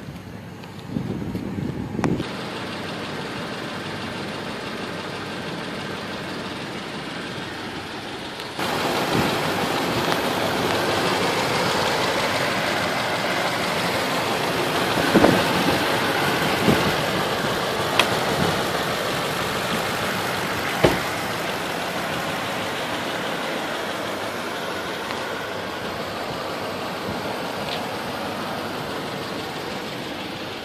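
2008 Toyota Tundra's 5.7-litre V8 idling steadily. It gets louder about eight and a half seconds in, and there are a few short clicks and knocks.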